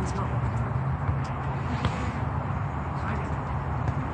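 A few faint, light taps of a soccer ball being dribbled on a hard court, over a steady low rumble and distant voices.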